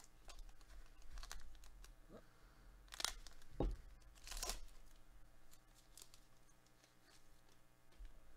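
Foil wrapper of a trading-card pack being torn open and crinkled by hand, with a sharp tear about three seconds in and a longer one a second and a half later.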